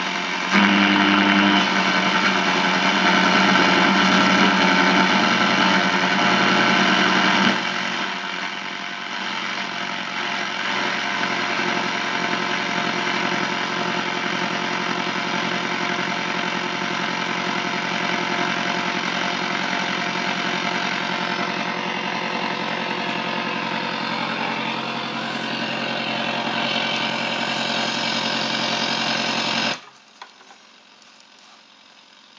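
Yugdon tube radiogram's loudspeaker giving out steady static hiss with a few steady tones and hum as its tuning knob is turned, with no station coming in clearly. It is louder, with a low hum, for the first seven or so seconds, then changes to a steadier, somewhat quieter hiss until it cuts off suddenly at the end.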